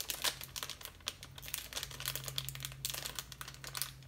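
A small plastic candy packet crinkling and crackling in irregular bursts as fingers pick and pull at it to get it open.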